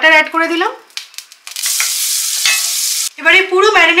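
Butter sizzling as it melts in hot oil in a cast-iron skillet: a steady hiss lasting about a second and a half, starting and stopping abruptly, after a few faint clicks.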